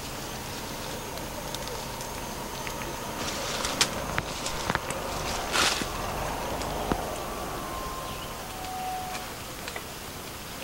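Dry vegetation rustling and snapping, with a cluster of sharp cracks around the middle, over a steady outdoor background hiss.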